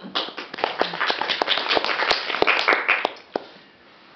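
Audience clapping after a poem, a dense run of claps for about three seconds that thins to a few last claps and stops.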